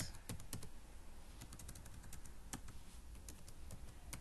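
Computer keyboard being typed on, faint, irregularly spaced keystrokes as a word is entered.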